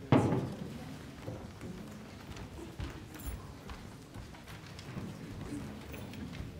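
A loud thump right at the start, then scattered soft knocks, shuffling and footsteps as people move around chairs and a table on a stage.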